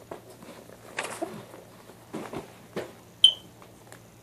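Scattered movement and handling noises: a few soft rustles and light knocks, then one sharp click with a brief high ring a little after three seconds in.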